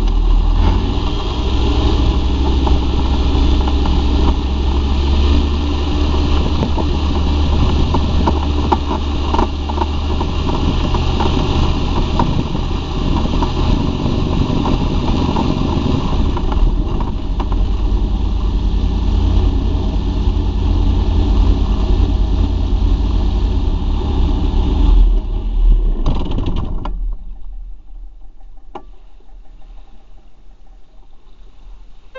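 Searey amphibious seaplane's engine and pusher propeller running steadily, loud and close on a camera mounted on the airframe. Its sound falls away abruptly about 27 seconds in.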